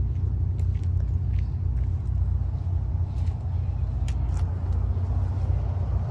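Chevrolet Duramax turbo-diesel V8 pickup idling with a steady low rumble.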